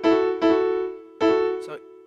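Digital piano playing a country-style third, an E flipped up into F sharp over a held chord: three struck notes, each ringing and fading before the next, the last about a second in.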